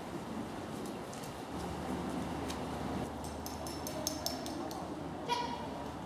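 Low murmur of voices across the hall, with a run of light clinks and ticks about three seconds in and one short high call near the end.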